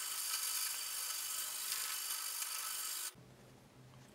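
Sandpaper on a wooden sanding block rubbed back and forth along the steel blade of an axe head, a steady scratchy hiss as the blade flat is smoothed. It stops abruptly about three seconds in.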